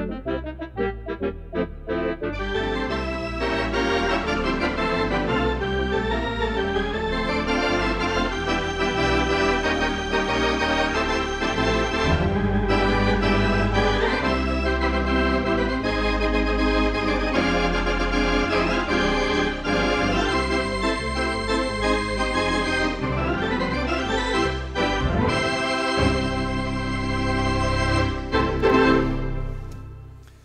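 Lowrey Fanfare electronic home organ played with its organ voices, chords and melody over a low bass line, fuller after the first couple of seconds and dying away at the end.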